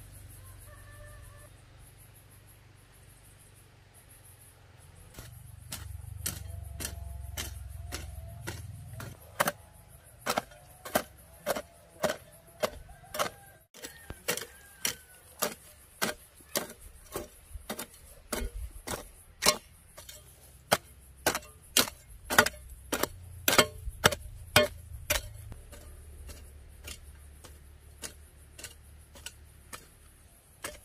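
A steel hoe chopping into dry, hard soil in a steady rhythm of about two strokes a second, starting a few seconds in.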